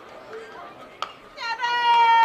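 Ballpark crowd ambience, with a single sharp crack of a metal bat meeting the ball about halfway through, then a spectator's long, high-pitched shout that slowly falls in pitch.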